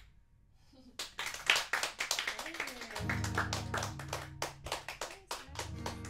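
A small audience clapping at the end of an acoustic song, starting about a second in. An acoustic guitar rings steady low notes under the applause from about halfway.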